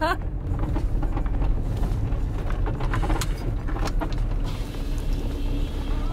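Van engine running at low speed, with tyres rolling over a dirt track, heard from inside the cabin as a steady low rumble.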